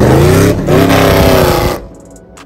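Car engine revving hard as the car accelerates past, with a brief dip about half a second in; the sound cuts off suddenly near the end.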